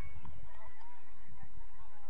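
Wind rumbling on the microphone outdoors, with a few faint, short, distant calls early on that could be honking geese or shouting players.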